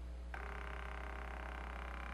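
Stepper motor jogging slowly at 10 RPM under an Arduino indexer's control, turning a belt-driven spindle. It gives a steady, faint whine of several pitches that starts about a third of a second in.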